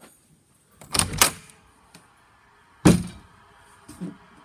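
Interior door being opened by its knob: a quick double clack about a second in, then one sharp knock near the three-second mark.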